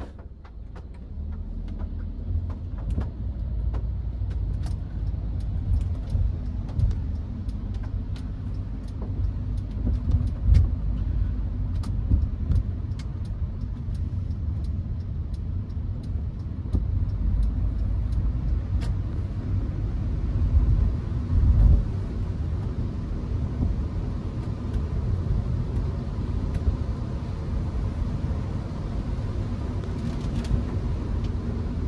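Cabin noise of a Hyundai HB20 with the 1.6 four-cylinder engine and four-speed automatic, driving: a steady low engine and road rumble that grows louder about a second in as the car pulls away, swelling briefly a few times.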